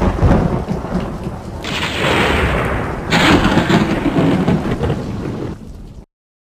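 Thunderstorm sound effect: rain with rolling thunder, two sudden loud thunder cracks about a second and a half and three seconds in. It cuts off abruptly at the end.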